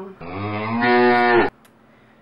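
A single long cow moo, rising in pitch and then held, cutting off abruptly about a second and a half in.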